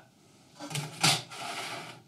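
A thin copper sheet set down on the engraver's metal honeycomb bed, with a knock about a second in, then scraping as it is slid into place.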